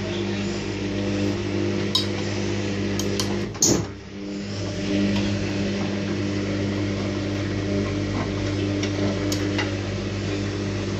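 Front-loading washing machine mid-wash, its drum motor humming steadily while laundry and water slosh around, with a few light clicks. About three and a half seconds in the motor sound drops away with a short falling sweep and a knock, then builds back up as the drum turns again.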